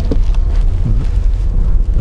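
Steady deep rumble of a moving car's engine and road noise, heard from inside the cabin.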